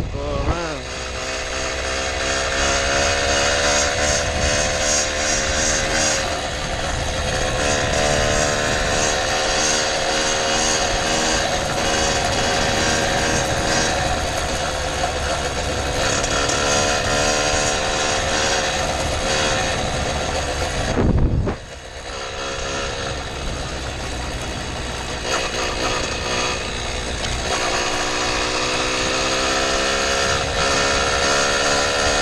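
Small two-stroke motorized-bicycle engine running under way, its pitch climbing and easing as the bike speeds up and cruises. About twenty seconds in there is a sharp knock, and the engine sound dips briefly before it picks up again.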